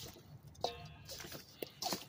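Faint wet squishing of raw, seasoned chicken wings being tossed by hand in a stainless steel bowl, with a couple of small clicks near the end.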